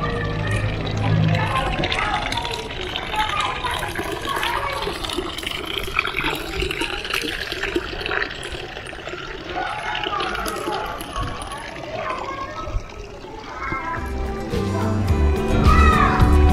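Thin stream of water from a stone drinking fountain's metal spout running into its basin, with people's voices in the background. Music comes in near the end.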